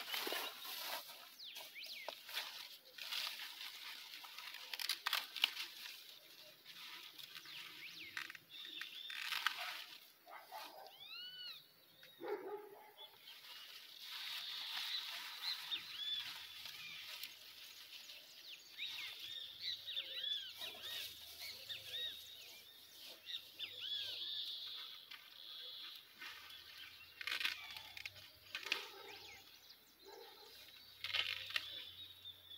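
Corn plants rustling and snapping as ears of corn are picked by hand, with birds chirping repeatedly in the background.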